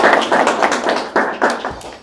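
Clapping: a dense patter of many hand claps that dies away near the end.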